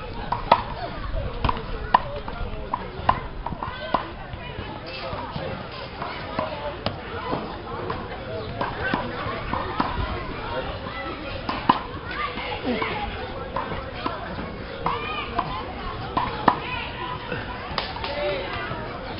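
Background voices and children's chatter with sharp knocks scattered through, several a second in the first few seconds.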